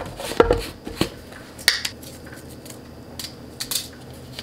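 Plastic screw lid being twisted off a plastic supplement tub, and the tub handled: a run of sharp plastic clicks and knocks, the loudest in the first two seconds.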